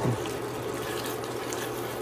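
Tomato stew simmering and bubbling in a pan, a steady sound, with a spatula moving through it.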